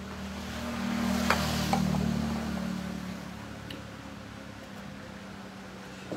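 A motor vehicle passing by: a low engine hum that swells over about a second and a half, then fades away over the next second or two.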